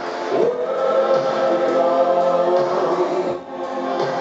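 Male lead vocalist singing live into a microphone over synth-pop backing, heard through the concert PA. He slides up into a long held note near the start and breaks the phrase briefly about three and a half seconds in.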